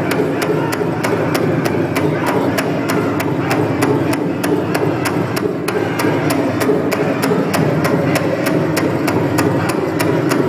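Powwow drum struck in a fast, even beat of about four strokes a second, with a group of singers over it: a Northern-style fancy dance song.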